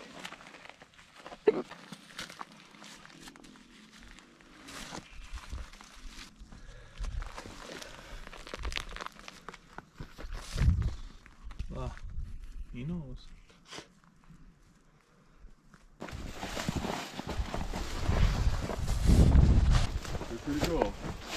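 Footsteps and rustling in brush and on gravel, with brief indistinct voices; the noise grows louder in the last few seconds.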